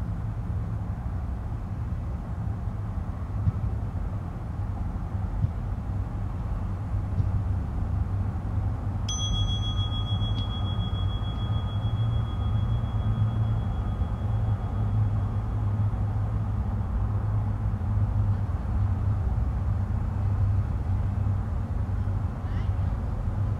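A single high bell ding about nine seconds in that rings on and slowly fades over several seconds, over a steady low rumble.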